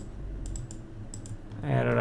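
Light clicks of a computer keyboard, about six short keystrokes in the first second and a half, before a man's voice comes in near the end.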